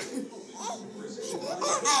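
Baby laughing, a little louder near the end.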